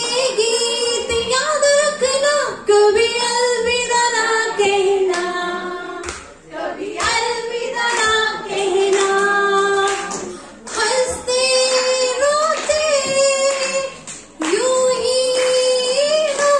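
A woman singing a melody into a handheld microphone, amplified over a PA, in long held phrases with a few short breaks between them.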